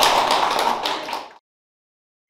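A small group of people clapping. The applause fades and cuts off to dead silence about a second and a half in.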